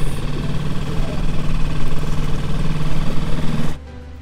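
Small tiller-steered outboard motor on an inflatable dinghy running underway at a steady pitch; the sound cuts off abruptly near the end.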